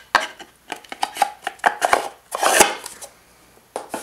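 A small wooden box and its lid being handled: a run of light wooden knocks and clacks, with a longer rustling scrape about two and a half seconds in.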